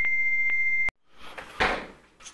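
A steady high electronic beep tone with faint ticks twice a second, cutting off suddenly about a second in, then a brief rush of noise that swells and fades. It is an edited intro sound effect under the title card.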